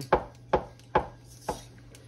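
Wire whisk knocking against the side of a plastic mixing bowl while working a thick powdered-sugar and orange-juice glaze: four sharp taps about half a second apart.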